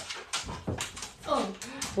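A pet dog making small noises among several short, sharp knocks and scuffs in the room, as the dog is being put out a door. A woman says "Oh" near the end.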